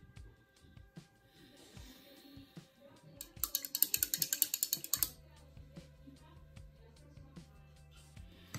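A paintbrush swished and tapped in a small metal water cup to rinse it: a fast rattle of sharp clicks lasting about a second and a half, in the middle. Faint scattered clicks come before it, and after it a low steady drone of background music sets in.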